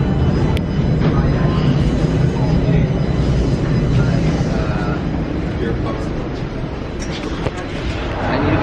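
Toronto subway train at the platform with its doors open: a low, steady rumble with snatches of passengers' voices over it and a brief knock near the end.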